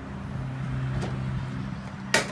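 A motor vehicle engine's low, steady hum, swelling slightly in the middle, with one light click about a second in.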